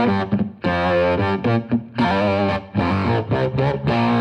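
Electric guitar played through a Line 6 Catalyst CX amplifier with an octave pitch effect on. Distorted notes and chords ring out in short phrases with brief breaks between them.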